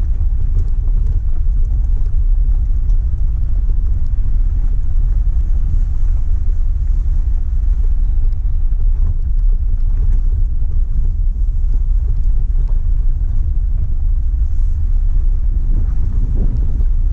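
Jeep Wrangler Rubicon driving along a rocky gravel trail: a steady low rumble of engine and tyres on gravel, with some wind on the microphone.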